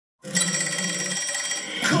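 A held musical chord at the close of a TV commercial, played through a television speaker; near the end it cuts to music and a voice.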